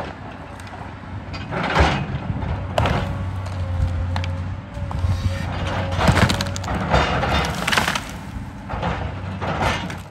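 Volvo excavator's diesel engine working under load while it pushes over a tree, with wood cracking and splintering in a series of sharp snaps; the loudest come about two seconds in and around six seconds in.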